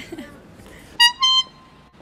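A horn gives two short, loud, high toots about a second in, the second slightly higher and longer than the first.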